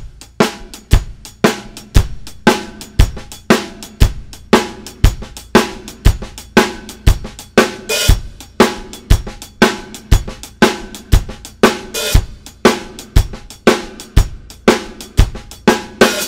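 Drum kit playing a shuffle groove, with strong strokes about two a second and hi-hat between them. Soft right-left-right snare ghost notes are mixed in. One brighter cymbal hit comes about halfway through.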